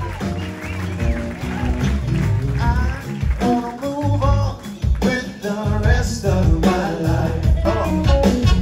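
Live band playing with voices singing over electric guitars.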